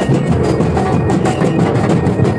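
Street parade percussion band playing: drums beating a fast, dense rhythm, with short bright pitched notes from metal mallet instruments over it.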